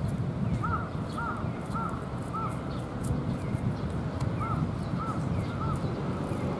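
A bird calling: a run of four evenly spaced arched calls, a pause, then three more, over a low steady rumble.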